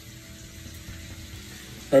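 Low, steady sizzle of apples and pears simmering in a pan of caramel sauce.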